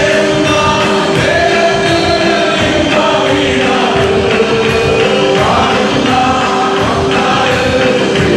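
Congregation singing a gospel worship song in chorus, many voices together, with rhythmic hand clapping.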